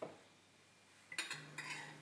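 Kitchen utensils clinking against dishware: a single light knock at the start, then a short cluster of sharp clinks a little over a second in.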